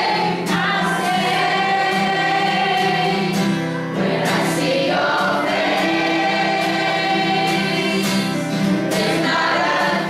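A community choir of adults and children singing a pop song together, accompanied by acoustic guitar.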